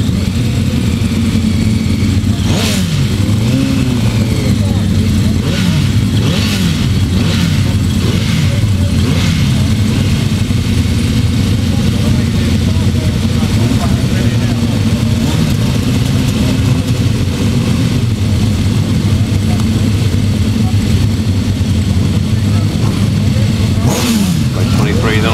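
A line of grasstrack racing sidecar outfits running their engines at the start tape, with riders blipping the throttles. The revs rise and fall repeatedly over the first ten seconds or so, then the engines settle into a steady, loud drone.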